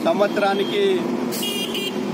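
Street traffic under a man's voice, with a short high-pitched vehicle horn toot about a second and a half in.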